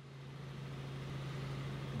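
A steady low hum with a hiss over it, fading in and growing louder over about two seconds.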